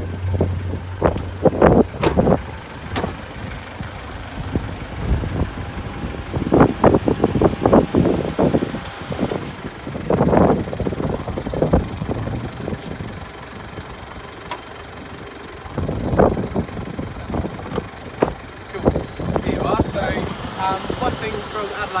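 A Mitsubishi Pajero's engine idles with a low hum while a series of sharp clunks and knocks comes from the car's door and bonnet being opened, latched and propped.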